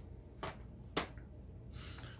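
Two sharp plastic clicks about half a second apart as Blu-ray cases are handled and set down, with a faint rustle near the end.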